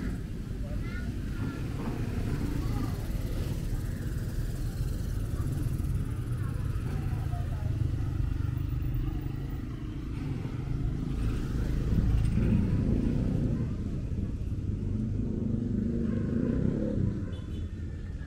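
Motorcycle engine running, its low rumble swelling louder about twelve seconds in and fading near the end, with faint voices in the street noise.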